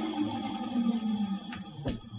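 Electric motor and rotor of a belt-driven balancing rig running down after being switched off: a low hum that slowly sags in pitch under a steady high-pitched whine. There is a single sharp click just before the end.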